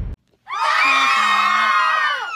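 A group of voices cheering together in one loud held shout, about two seconds long, that falls off at the end.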